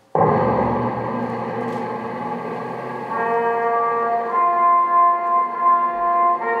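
Solemn recorded orchestral music for the salute to the national flag starts suddenly with a loud ringing opening chord, then sustained string and brass notes come in about three seconds in.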